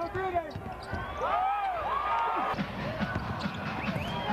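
Basketball being dribbled on a hardwood court, with short sneaker squeaks rising and falling in pitch and a steady arena crowd murmur underneath.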